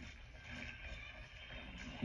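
Faint, steady wash of the anime episode's soundtrack with no clear speech or distinct events.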